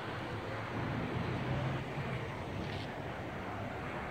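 Steady hum of distant city traffic, even and unbroken, with a faint low drone in the middle.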